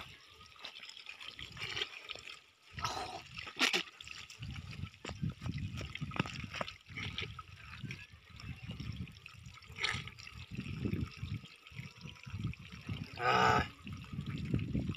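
Water trickling as it is poured from a steel bowl into a small bottle, with scattered small knocks of the bowl and bottle being handled.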